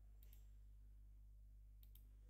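Faint computer mouse clicks: two quick pairs of clicks about a second and a half apart, over a steady low electrical hum.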